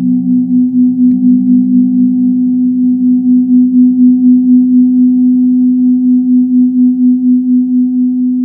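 Sonicware Liven XFM FM synthesizer playing a slow ambient drone. A loud sustained low tone pulses gently and evenly, and a lower note underneath changes during the first couple of seconds.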